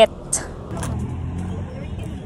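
Low, steady rumble of a motor vehicle's engine running nearby, growing louder about half a second in.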